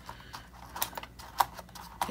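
Punched paper pages being pressed onto the plastic discs of a disc-bound planner: a string of small sharp clicks as the page edges snap into the disc rims, the loudest about one and a half seconds in.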